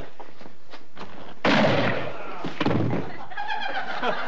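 A sudden loud thud about a second and a half in, with a noisy burst lasting about a second after it, then a smaller knock and voices toward the end.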